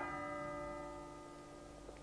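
A bell tolling: one stroke right at the start, its ringing tone slowly fading over the next two seconds, over the last of an earlier stroke's ring.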